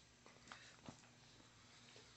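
Near silence, with a few faint soft rustles and light clicks about half a second and a second in: a wolfdog puppy moving on a bedspread with a knotted rope toy.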